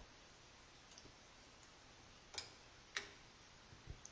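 Near silence: room tone, with two faint, short clicks, a little over two seconds in and about half a second later, as from small metal parts being handled.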